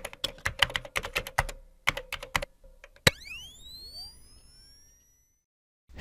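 Logo intro sound effect: a rapid run of keyboard-typing clicks, then a single sharp click about three seconds in followed by several rising tones that level off and fade away over about two seconds.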